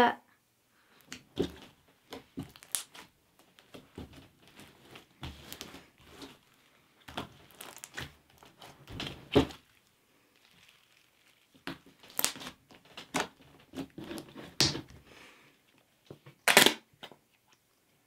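Clear PVA glue and borax slime being kneaded and squeezed by hand: irregular sticky clicks and crackles, with a sharper click near the end.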